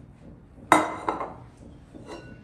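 Kitchenware clinking as mixing bowls and a spatula are handled: one sharp knock with a short ring about two-thirds of a second in, then a softer knock.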